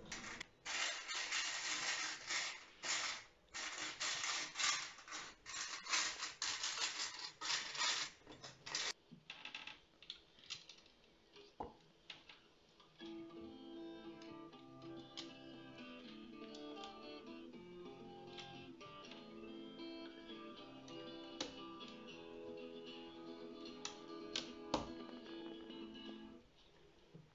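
Loose Lego pieces clattering and being rummaged through for the first nine seconds or so. From about 13 s, an acoustic guitar plays back through a speaker, with occasional light clicks of pieces over it.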